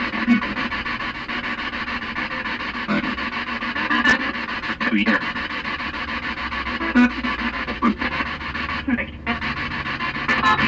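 Spirit box sweeping through radio stations: a steady rush of static broken by short, chopped fragments of sound that come and go irregularly.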